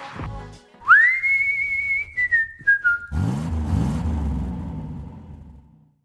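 Branded sonic logo for an animated end card: a whistled note slides up, holds, then steps down three times, followed by a low revving rumble that fades away.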